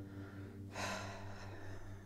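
A person's sharp breath, a gasp lasting under a second, about three-quarters of a second in, over a low steady hum.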